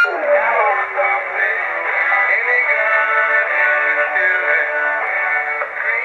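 Music from an AM broadcast station received on a uBitx transceiver in LSB mode around 1.5 MHz, with narrow, thin-sounding receiver audio. The station is still audible but greatly weakened by the newly fitted broadcast-band high-pass filter in the receiver's antenna line.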